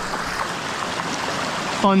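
Small rocky brook running steadily over stones and a little cascade, a constant rush of water.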